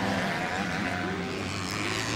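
Four-stroke 250cc motocross bike engines running on the race track, a steady drone with a faint rise and fall in pitch.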